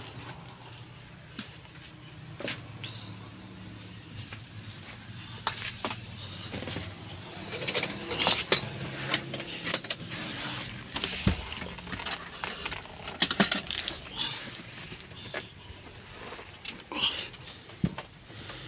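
Scattered clicks, knocks and rustling from handling the interior engine cover of a Hyundai Coaster minibus as it is moved and lifted, with a cluster of sharp clicks a little past the middle, over a faint steady low hum.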